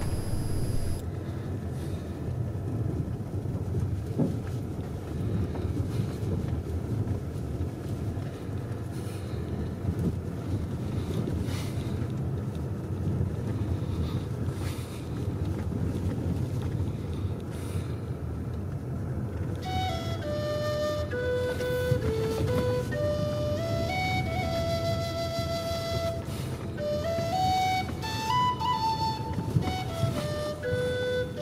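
A car driving slowly along an unpaved sand track, with a steady low rumble of engine and tyres. About two-thirds of the way in, a flute melody starts over it, one note at a time.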